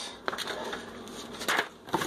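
A paper letter being handled and laid down into a cardboard box: a run of light rustles and crackles, with a louder rustle about one and a half seconds in.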